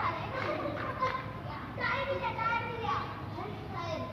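Children's voices, high-pitched and indistinct, in two stretches of chatter and calling.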